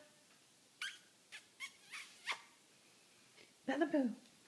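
A Yorkshire terrier roused from sleep makes a few short, faint sounds, then a brief whine falling in pitch near the end: a half-hearted response to being called.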